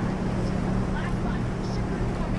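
Motorboat engine running at a steady low hum, with a noisy rush of wind or water over it.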